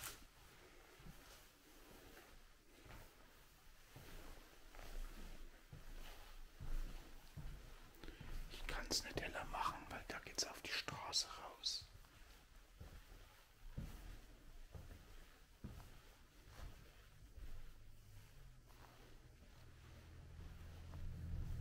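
Hushed whispering for a few seconds around the middle, over faint scattered footsteps in a quiet room.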